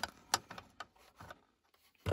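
A few faint clicks and light rubbing from a billet aluminum lighter-socket plug being handled in a car's 12 V socket. The loudest click comes about a third of a second in. The plug is too small for the socket and sits loose in it.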